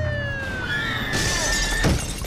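Film soundtrack: a police car siren sliding down in pitch as it winds down, then glass shattering about a second in, ending in a heavy low thud near the end.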